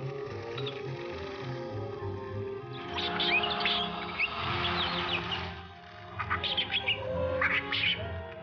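Film score with steady held notes, over which the film's fairy creatures chitter in quick high chirps and squeaks, in a dense flurry about three seconds in and again near the end.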